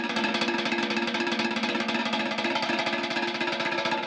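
A fast drum roll played with wooden sticks on the bottom of an upturned galvanized metal washtub. It is a steady, rapid rattle of strikes over a sustained metallic ring.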